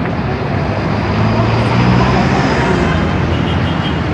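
Street traffic with a motor vehicle's engine running close by, growing to its loudest about halfway through.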